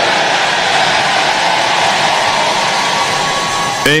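A large congregation responding loudly to a pronounced blessing: an even roar of many voices that stops just before the preacher speaks again near the end.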